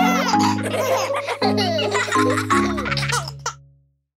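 Closing bars of a children's song, with held chords and bass notes, under young children's voices laughing and giggling. The music and laughter fade out shortly before the end.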